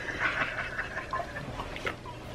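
A man laughing hard, breathy and mostly without voice, in short bursts; it stops just before the end.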